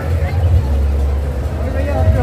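Tractor engine running with a steady low rumble, under the voices of a crowd.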